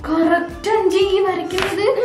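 A young woman's voice in a sing-song chant, with a few sharp taps, the strongest near the end.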